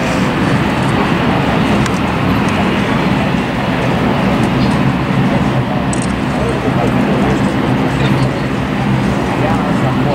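Steady drone of a boat's engine mixed with wind and water noise, with people talking indistinctly in the background.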